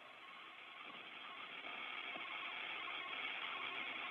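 Faint hiss of an open space-to-ground radio channel between transmissions during a Soyuz docking approach, slowly growing louder.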